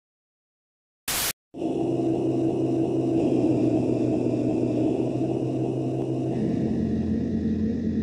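An ominous synthesized drone under spooky title cards: a short sharp burst about a second in, then a sustained drone of several held tones, low and high, that change pitch twice and fade out near the end.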